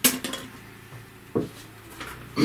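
Light clatter of small hard objects being handled: a quick run of sharp clicks at the start, then a single knock a little over a second in.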